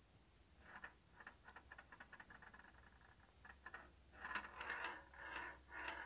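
The ball inside a Perplexus Rookie maze ball rolling and clicking along its plastic tracks as the sphere is turned: a rapid run of faint ticks, growing denser and louder about four seconds in.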